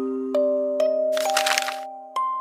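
Music-box tune: single plucked notes ringing and slowly fading in a slow melody. A short crackling burst of noise, about half a second long, cuts in just past the middle.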